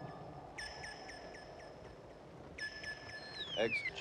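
Electronic beeping from a radio set: rapid, evenly spaced high beeps, about four a second, in two bursts, followed near the end by a falling electronic whistle as a man's voice begins a radio call.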